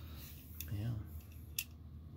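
A couple of sharp plastic clicks, one at the start and another about a second and a half in, from small plastic action-figure parts being handled, over a steady low hum.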